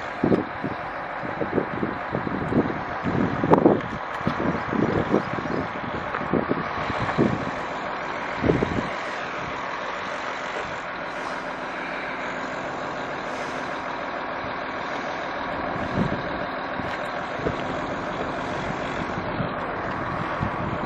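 Steady drone of a nearby motor vehicle's engine, with short knocks and rustles in the first half.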